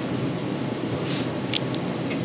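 Steady rushing background noise, with a few faint light clicks in the second half as hands fit a stranded wire into a small crimp terminal.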